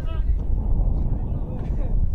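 Wind buffeting the microphone in a heavy low rumble, with players' shouts carrying across a football pitch near the start.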